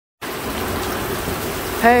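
Heavy rain pouring down in a steady hiss onto a lawn, sidewalk and street.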